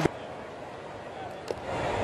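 Ballpark crowd murmur at a baseball game, with a sharp click at the very start and a short crack of bat on ball about one and a half seconds in as the batter fouls off a pitch. The crowd noise swells slightly after the crack.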